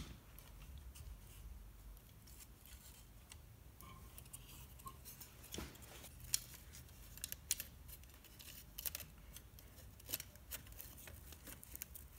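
Faint scattered clicks and light taps as a GE clock radio's bare sheet-metal chassis and its wiring are handled and turned over, the clicks coming more often in the second half.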